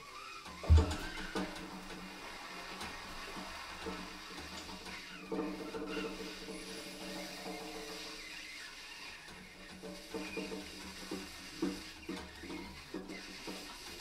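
Free-improvised jazz from a trio of baritone saxophone, alto saxophone and drum kit. A heavy drum hit comes about a second in, then sparse clicks and small percussive sounds, with held saxophone tones around the middle and again near the end.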